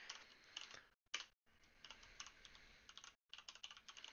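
Computer keyboard typing: an irregular run of faint, quick key clicks as a phrase is typed out.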